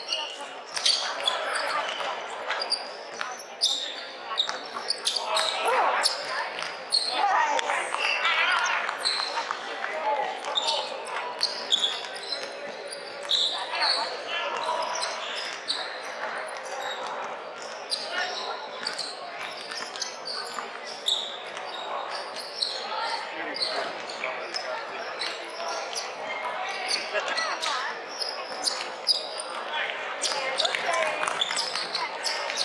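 Basketball bouncing on a hardwood court amid a game in a large echoing sports hall, with repeated sharp impacts over indistinct shouting and chatter from players and spectators.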